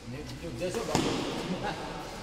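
A badminton racket sharply striking the shuttlecock about a second in during a doubles rally, over voices calling out.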